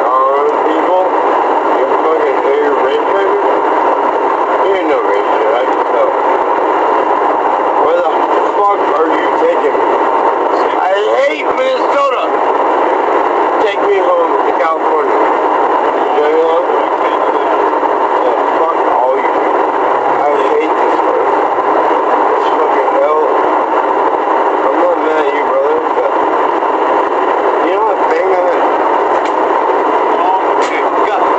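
Muffled, indistinct voices buried under a steady loud hiss. The sound is thin and tinny, with no bass, as picked up by an in-car camera's microphone.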